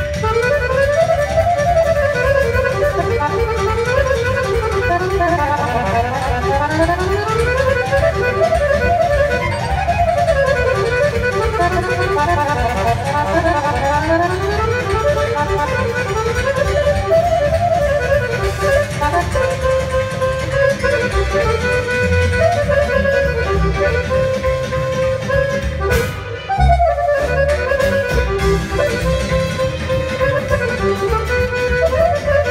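Balkan accordion playing fast runs that sweep up and down the keyboard, over a live band accompaniment of bass and drums. Near the end the run breaks off briefly, then the playing picks up again.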